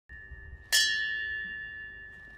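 A memorial bell struck once, ringing and slowly fading, with the faint tail of the previous stroke beneath it. The bell is tolled once for each life lost.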